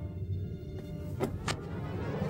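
A low, steady rumble with two sharp knocks about a quarter second apart, a little over a second in.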